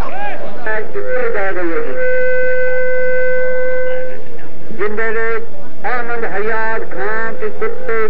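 A man's loud voice calling out in short bursts. About two seconds in, a steady, unwavering tone sounds for roughly two seconds, then the calling resumes.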